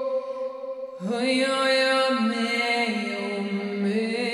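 A woman's voice chanting long, held wordless notes. One note fades out, and about a second in a new, slightly lower note begins and is sustained, shifting pitch in small steps.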